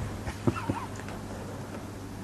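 A low steady hum in the recording's background, with two faint clicks about half a second in.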